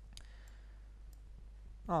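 A few faint clicks from a laptop being worked as a query plan is brought up, over a steady low hum; a man's voice starts near the end.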